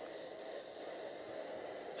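Faint, steady hiss of steam venting from a Black & Decker Stowaway SW101 travel steam iron as the last of the water in its tank is steamed out.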